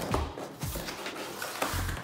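Background music, with hands handling a cardboard laptop box and working at its flap, giving a few short taps and scrapes.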